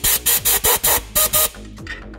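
Compressed-air blowgun firing about seven quick blasts into a small engine's crankcase hole, blowing debris out. The blasts stop about a second and a half in.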